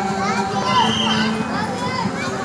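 Many children's voices overlapping as a group of boys walks in procession, over a steady low hum.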